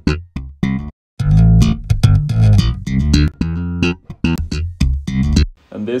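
Slap bass line playing back solo: plucked and popped electric bass notes with heavy low end, run through EQs and saturation. The line breaks off briefly about a second in and stops shortly before the end.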